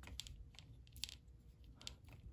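Faint, light clicks and taps from handling a disassembled iPod nano's logic board and LCD with fingers and a small metal tool, three short clicks spread through the two seconds.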